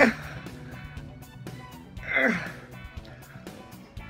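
Two strained, falling grunts from a man straining to prise a beer bottle cap off with his teeth, one right at the start and one about two seconds in, over background music with a steady beat.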